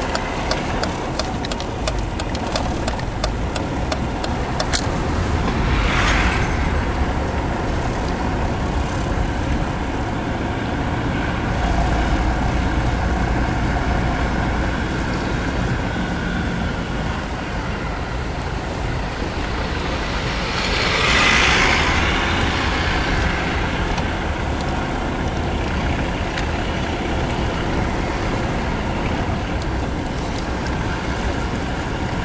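Car engine and road noise heard from inside a Mercedes-Benz cabin while driving slowly: a steady low rumble with a few light clicks in the first seconds. Louder swells of noise come once briefly about six seconds in and again for a couple of seconds past the twenty-second mark.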